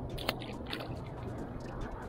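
Wet mesh cast net being shaken out over the water: a run of small crackling clicks and drips, a few slightly louder ones in the first second.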